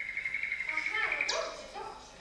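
A high, warbling whistle-like tone held for over a second, then quick sliding pitches, one sweeping up and others falling lower.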